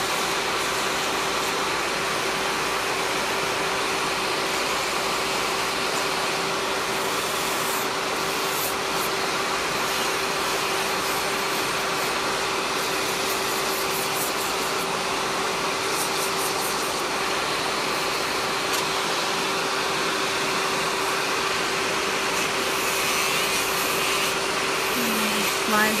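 Electric nail file with a coarse sanding band running at a steady high speed with an even hum, sanding gel colour off a fingernail. Underneath it runs the steady rush of a nail dust collector's fan.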